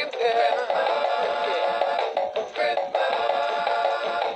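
Gemmy Bongo Snowman animated singing toy playing its built-in song through its speaker: a sung vocal over a music track with drum beats, while its arms drum on the bongos.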